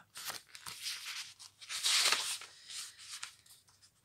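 Paper rustling and handling noise from a paperback book being lowered and its page turned: a series of soft rustles, loudest about two seconds in.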